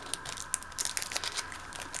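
Paper crinkling and rustling in quick, irregular crackles as a packet of scrapbooking paper scraps is handled.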